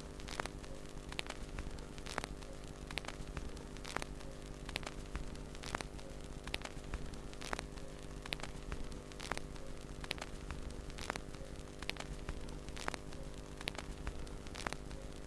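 A vinyl LP's silent groove playing back with no music: a steady mains hum, surface hiss and crackle, and a sharp click about once a second.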